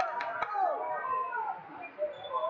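Overlapping voices of a crowd in a large hall, with two sharp clicks in the first half second.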